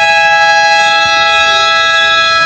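Basketball game buzzer sounding one loud, steady, buzzy tone, signalling a timeout.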